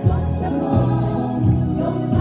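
A choir singing a Taiwanese campus folk song in harmony through a PA, over amplified accompaniment with bass notes that change every half second or so.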